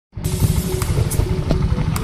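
Motorcycle on the move: engine and road noise with wind buffeting the microphone, cutting in just after the start.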